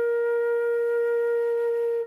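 Concert flute holding one steady B-flat for four counts, the last note of the tune.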